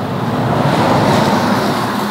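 Road noise of a passing car, a steady rush that swells about half a second in and eases off again.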